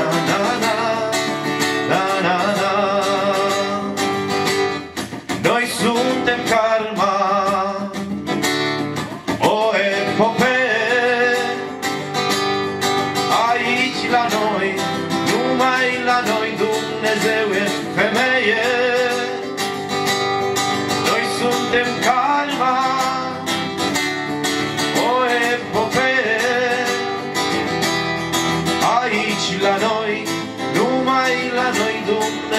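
A man singing a song while strumming an acoustic-electric guitar.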